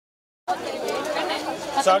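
Dead silence for about half a second, then people talking over one another, with one man's voice coming through clearly near the end.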